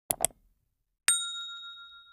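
Subscribe-button animation sound effect: two quick clicks, then about a second in a single bright bell ding that rings on and fades away.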